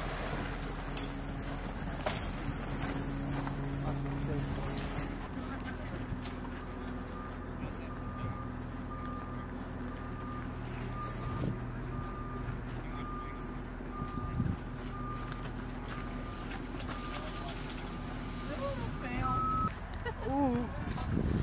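A vehicle engine running steadily, with a back-up alarm beeping about once a second from about six seconds in until near the end.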